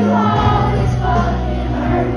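Live pop-rock band with a lead singer, heard from the audience in a concert hall: sung melody over guitar, with bass and drums coming in strongly about half a second in.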